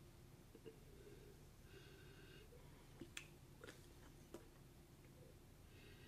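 Near silence: quiet room tone with a faint sniff about two seconds in, a person nosing a glass of red wine, and a few soft clicks after it.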